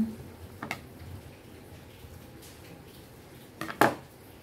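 Scissors and fabric being handled on a tabletop: a faint click under a second in, then a couple of sharp knocks near the end, the loudest sounds, as the metal scissors are put down on the table.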